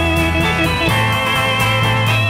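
1960s rock band recording in a minor key: sustained electric combo organ chords over an arpeggiated electric guitar, with bass and drums, playing at an even pace.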